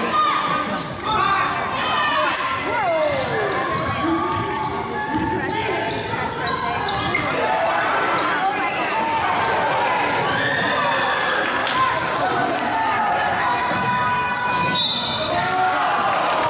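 Live basketball play in a gym: the ball bouncing on the hardwood court, with short knocks throughout. Over it come shouts and voices from players and spectators.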